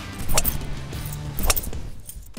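Two sharp cracks about a second apart, a Callaway Paradigm Ai Smoke driver striking the golf ball, over background music.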